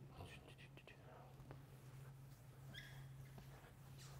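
Near silence: room tone with a steady low hum and a few faint ticks.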